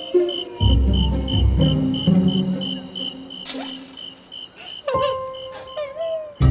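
Cricket chirping as forest ambience, a high chirp repeating about three times a second, over soft background music; a sudden sharp sound comes about five seconds in.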